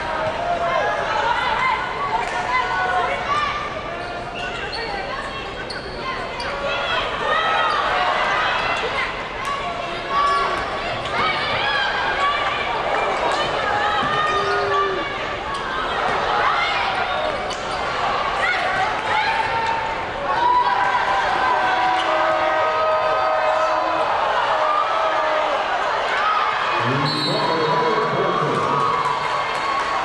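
Live basketball game sound on a hardwood court: the ball dribbling, sneakers squeaking and players' and spectators' voices mixing in the arena.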